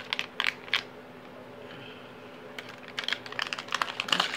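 Light clicking and tapping of small hard plastic pieces as press-on nails and their plastic packaging are handled. There are a few sharp clicks near the start and a quick run of clicks near the end, over a faint steady hum.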